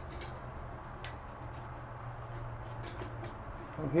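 A few faint clicks and light handling sounds as a plastic ball rod nut is unscrewed by hand from a bathroom sink's drain tailpiece, over a steady low hum.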